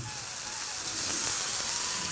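Minced onion and ginger-garlic paste frying in oil in a kadai, a steady hissing sizzle that swells slightly about a second in.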